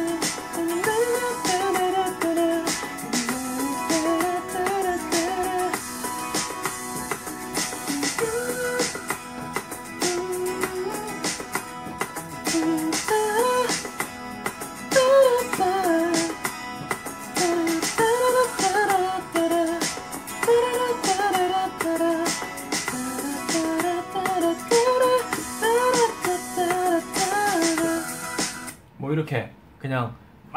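Playback of a song demo: a sung melody line over an instrumental backing track, which cuts off abruptly near the end.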